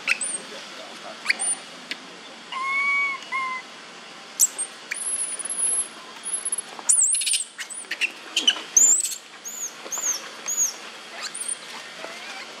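High-pitched animal calls over faint clicks and leaf rustling: a short steady whistled call in two parts about a quarter of the way in, then a quick run of four or five arched squeaky chirps in the last third.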